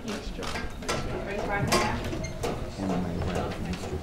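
Indistinct voices of people talking in a room, with several short, sharp clicks scattered through them.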